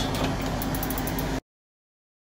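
Cup-drink vending machine running as it dispenses a drink into a cup: a steady hum with a rushing noise, cut off abruptly about one and a half seconds in, then dead silence.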